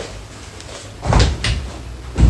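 Shoes knocking against a small metal shoe rack as they are handled and set on its shelves: a small click at the start, a dull knock about a second in and a lighter knock just after.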